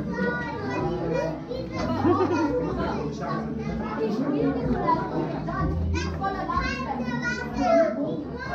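Children's voices and chatter, several people talking over one another without pause.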